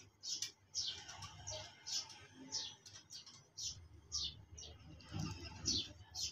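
A small bird calling over and over in the background: a short, high chirp that falls in pitch, repeated about one and a half times a second.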